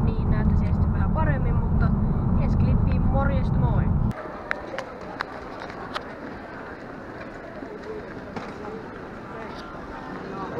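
Car interior road rumble with indistinct voices for about four seconds, then a sudden cut to a quieter indoor space: a few footsteps click on a wooden parquet floor over a murmur of talk.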